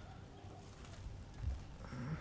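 A quiet pause with faint background hiss and one soft, low thump about one and a half seconds in.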